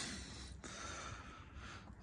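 Faint breathing from the person holding the phone during a pause in speech, over a low, steady hiss.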